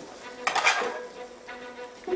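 Wooden spoon stirring and scraping in a stainless steel sauté pan of onions and peppers, with a short clatter about half a second in.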